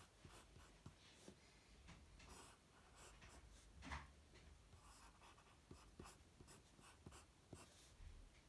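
Pencil sketching on paper: faint, quick scratching strokes, one louder stroke about four seconds in.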